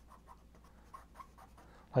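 Pencil scratching faintly on drawing paper in a series of short strokes.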